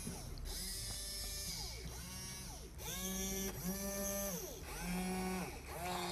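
The small electric gear motors of a plastic robot-arm kit run in about five short spells, one after another. Each spell is a whine that rises in pitch as the motor spins up and falls as it stops.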